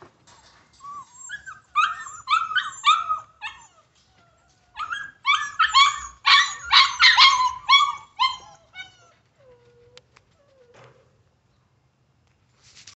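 Pit bull whining in quick, high-pitched yelps, in two runs of several seconds each, with a lower drawn-out whine near the end.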